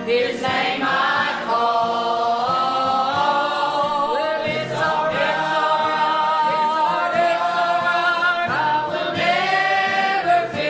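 A church choir of men and women singing together, holding long notes and sliding between them.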